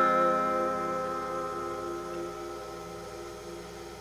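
Final chord on an acoustic guitar, struck just before, ringing out and slowly fading away.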